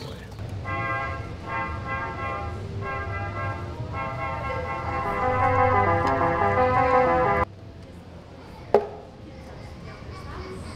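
Small portable electronic keyboard playing a short tune of bright, reedy electronic tones in a few phrases, which stops abruptly about seven and a half seconds in. A single sharp knock follows shortly after.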